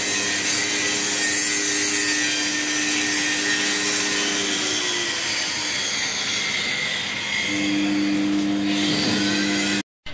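Machinery running steadily, a continuous hissing mechanical noise over a low two-tone hum. The hum fades about halfway through and comes back stronger a couple of seconds before the end. It all cuts off suddenly just before the end.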